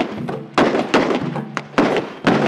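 A series of heavy booming hits, about two a second, each with a short ringing tail.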